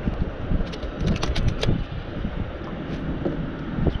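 Wind buffeting the microphone in a steady low rumble, with a quick run of sharp clicks about a second in.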